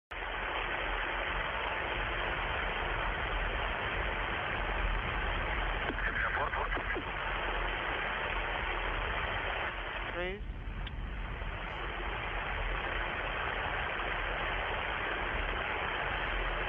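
Steady hiss of an open broadcast or radio audio feed, with faint snatches of a voice about six seconds in and again around ten seconds.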